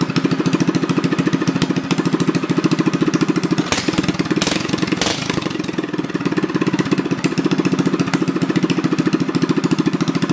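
Stage 1 Predator single-cylinder go-kart engine running at a fast idle through an open header pipe with no muffler, a rapid, even stream of exhaust pulses. About four and five seconds in the running wavers, with two sharp cracks, before settling back into the steady idle.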